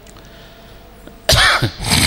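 A man coughing twice into a close microphone, starting just over a second in, the second cough shortly after the first.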